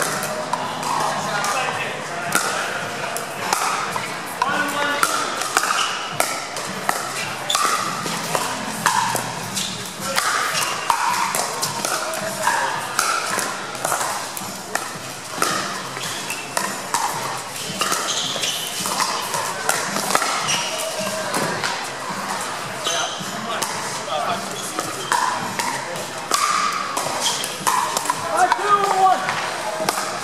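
Pickleball doubles rally: paddles hitting a plastic pickleball with sharp pops, repeated irregularly throughout, along with the ball bouncing on the court. Indistinct chatter from spectators runs underneath.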